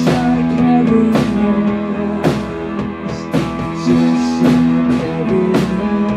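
Live rock band playing loudly: electric guitars over a drum kit, with heavy drum and cymbal hits on a steady beat about once a second.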